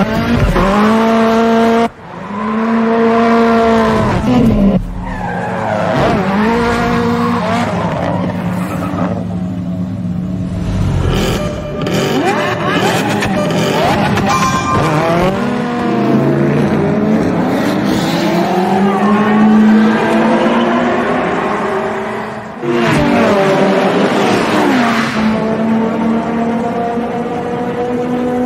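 Race car engine revving hard, its pitch climbing and dropping again and again, with a brief drop in level about two seconds in and a sudden jump in level near the end.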